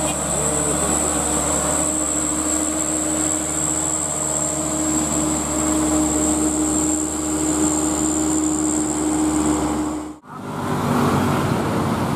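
Diesel engine of a loaded Mitsubishi Canter dump truck pulling up a hill, a steady even drone, with a steady high-pitched whine above it. About ten seconds in the sound cuts off sharply and a different vehicle sound follows.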